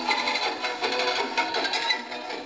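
Music playing on a Pathé Diamond portable suitcase gramophone: an old record reproduced acoustically through its soundbox, thin-sounding with no bass.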